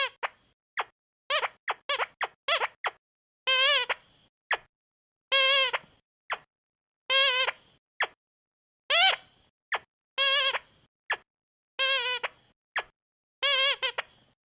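Squeaky rubber dumbbell dog toy squeezed over and over. Long squeaks with a wavering pitch come about every one and a half to two seconds, with short, quick squeaks between them.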